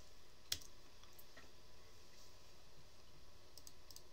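Clicks from working a computer: one sharp click about half a second in, then a few faint clicks, over low room hiss.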